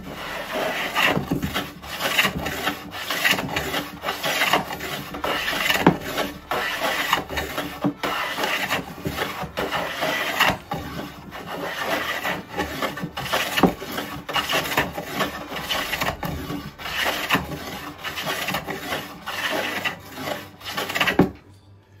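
Stanley Bailey No. 27 transitional jack plane, a wooden body with an iron frame, planing a board in repeated rasping strokes and peeling off full shavings. It is a sign that the freshly sharpened, restored plane cuts well. The strokes stop about a second before the end.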